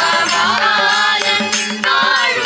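Women singing a devotional bhajan in Carnatic style, with violin accompaniment over a steady drone and light percussion strikes.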